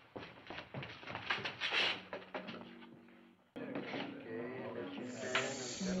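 Old western TV soundtrack: a few footsteps and knocks at first. About three and a half seconds in, a sudden cut to saloon crowd chatter with music.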